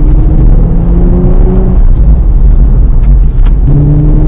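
Nissan Fairlady Z NISMO's twin-turbo V6 being driven hard on track, with a deep rumble. Its note rises as the car accelerates in the first second or so, eases off, then rises again near the end.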